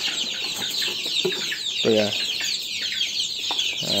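A flock of young kampung chicks peeping without pause. Many short, high-pitched calls, each falling in pitch, overlap one another.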